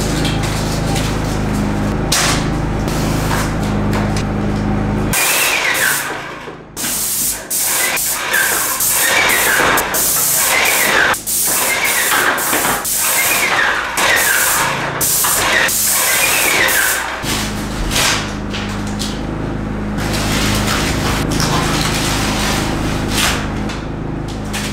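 Paint spray gun spraying wall paint in repeated hissing bursts as the trigger is pulled and released. A steady low hum from the sprayer's motor is heard in the first few seconds and again in the last several seconds.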